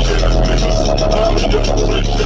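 Loud music with heavy, sustained sub-bass playing through a 100,000-watt car audio system, heard from inside the vehicle's cabin.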